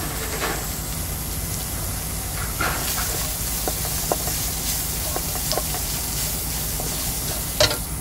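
Pork, garlic and ginger frying in a little oil in a wok: steady sizzling with small pops and the scrape of a wooden spatula stirring. A sharp knock comes near the end.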